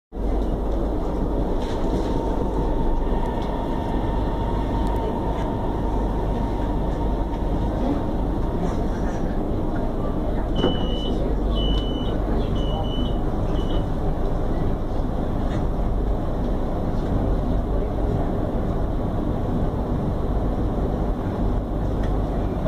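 Steady rumble and murmur inside the carriage of a Chinese-built CSR electric multiple unit. A faint steady whine fades out within the first few seconds. About eleven to fourteen seconds in comes a run of short high beeps, the kind a door chime gives as the doors work.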